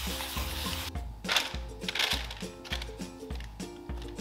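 Aerosol cooking spray hissing into a parchment-lined loaf pan, cutting off about a second in. Several short scrapes and knocks follow as a spatula scrapes the cauliflower mixture out of a glass bowl into the pan.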